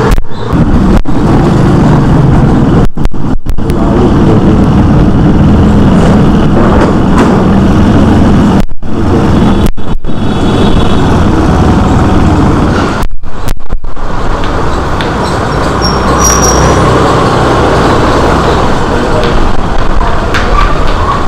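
Loud, steady rumble of a ride through a narrow street on a motorised two-wheeler, with wind buffeting the microphone. The sound cuts out briefly several times.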